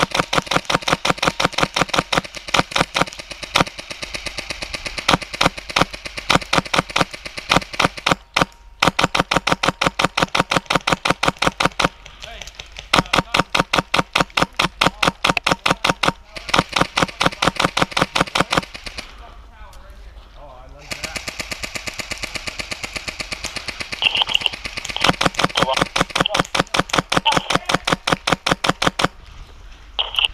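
Airsoft electric guns firing long full-auto strings, a rapid, even clatter of shots that breaks off briefly about eight seconds in and for a couple of seconds around twenty seconds in.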